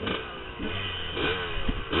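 Dirt bike engine revved in quick throttle blips, about four in two seconds. Each blip rises sharply in pitch, then falls away as the throttle closes.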